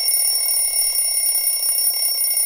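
Smartphone alarm ringing, a steady high-pitched ring that sounds on without a break.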